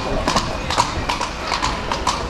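Hooves of a carriage horse clip-clopping on stone street paving, a quick, even run of strikes about four a second, heard from the horse-drawn carriage it is pulling.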